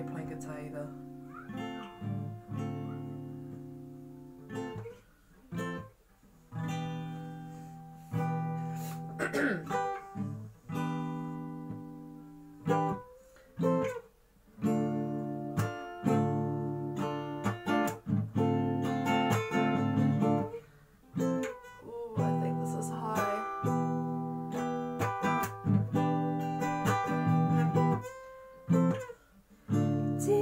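Acoustic guitar strummed in a steady chord pattern, each chord ringing out and then cut short by brief muted pauses: the instrumental intro before the vocal comes in.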